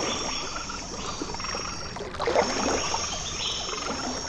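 Frogs croaking irregularly over a steady high insect trill, like a night-time marsh ambience, with a louder cluster of croaks a little past halfway.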